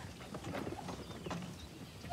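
Dry wheat stalks crackling and rustling as a boat trailer's wheels and footsteps are dragged through the field: a stream of irregular small crunches, with a few faint bird chirps.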